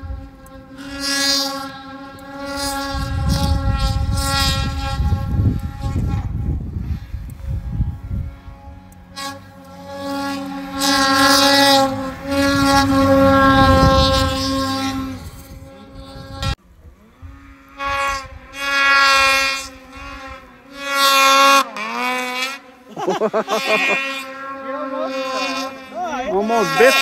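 Snowmobile engine revving hard in repeated long bursts, its high droning note swelling and fading, with quick swoops of pitch up and down near the end.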